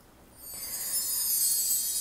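A high, shimmering chime-like sparkle, the kind of effect laid over an album box being opened. It swells in about half a second in and holds steady.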